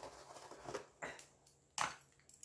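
Faint rustling and clinking of small dirt-caked scrap metal finds being handled and dropped onto a cloth-covered pile, with a sharper sound about halfway and a short louder one near the end.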